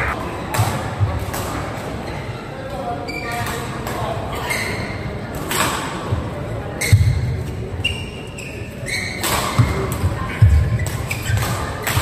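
Doubles badminton rally in a large echoing hall: a series of sharp racket strikes on the shuttlecock, with the players' footsteps thudding on the court.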